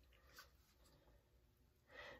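Near silence: faint room tone, with one soft click about half a second in.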